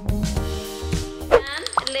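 Background music with sustained tones, and a voice coming in over it near the end.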